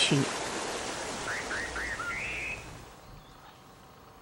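Mountain stream rushing over rocks, with a bird calling over it: four short chirps, then a longer wavering note. About two and a half seconds in, the water sound drops away to a faint hiss.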